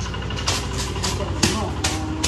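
A vehicle engine idling steadily, with a low even pulse, while woven sacks are handled with rustles and a few sharp knocks.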